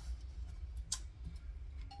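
Hands smoothing folded fabric on a cardboard template, with a light tap about a second in, over a low steady hum.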